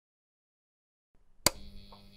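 A single sharp click about one and a half seconds in, followed by a faint, steady electrical hum.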